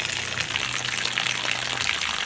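A steady stream of water pouring from the open plastic ball-valve drain of a fresh water tank and splashing into a puddle on the ground.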